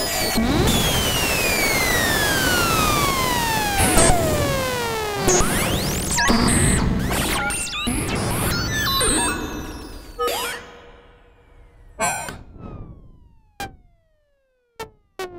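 Buchla 200e analog modular synthesizer patch through spring reverb: a dense hiss with slow falling pitch sweeps and sharp percussive hits. After about ten seconds it thins out to a few separate hits and short falling chirps.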